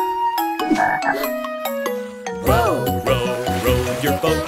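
Cartoon frog croaks over a bright instrumental children's-song tune of held, stepping notes. A bass-and-drum beat comes in about halfway through, alongside croaks that rise and fall in pitch.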